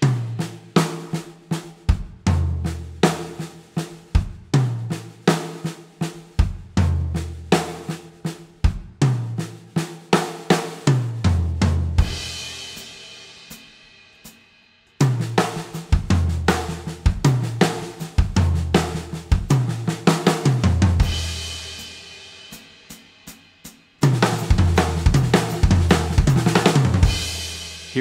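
A drum kit playing a sticking-based fill of single and double strokes with bass drum, on a Sakae kit with a brass snare, toms and cymbals. It is played three times, each faster than the last (40, 80, then 160 beats per minute). Each of the first two passes ends on a cymbal that rings out and fades.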